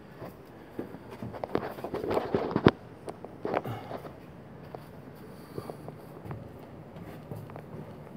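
Scuffs, scrapes and knocks of someone scrambling over rock, hands and shoes on stone, with handling bumps on the phone. The sharpest knock comes about two and a half seconds in; after that only a few small ticks.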